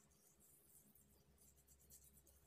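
Very faint scratchy rubbing as fingertips massage a sugar scrub into the skin of the face.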